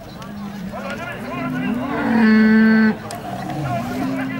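Bull bellowing: a low moo rises in pitch from about one and a half seconds in, then holds a loud, steady note that cuts off abruptly near the three-second mark. Fainter low moos and voices are heard around it.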